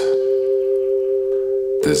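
Ambient music drone: two steady tones held together without change. A voice comes in near the end.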